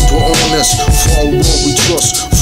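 Hip-hop music: a beat with heavy bass, regular drum hits and a held synth note, with a rapping voice over it.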